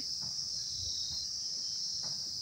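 A steady, high-pitched chirring chorus of insects, cricket-like, running without a break.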